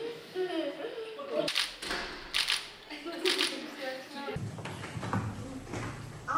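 Children talking and chattering, with a few short clicks in the first half. The background changes abruptly about four seconds in, to a fuller low hum and more voices.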